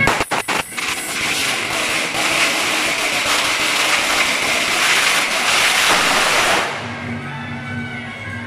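A long string of firecrackers going off: a few separate bangs at first, then a dense, rapid crackle of reports lasting about six seconds that cuts off abruptly near the end.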